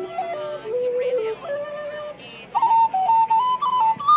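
Irish flute playing a quick jig-style melody, one note line stepping up and down; about two and a half seconds in it comes in louder and jumps higher in pitch.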